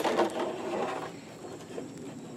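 A thin plastic gallon jug handled and turned over in the hands, its walls crinkling and clicking, loudest in the first second and then fading.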